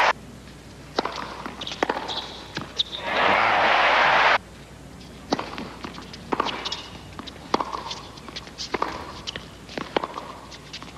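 Tennis rallies: a ball struck by rackets and bouncing on the court, sharp knocks about every half second, with short high shoe squeaks. About three seconds in, a burst of crowd applause cuts off suddenly, and the knocks of a second rally follow.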